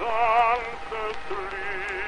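Baritone voice singing held notes with a wide vibrato over orchestral accompaniment, on a 1920 acoustic recording with surface hiss and faint crackles.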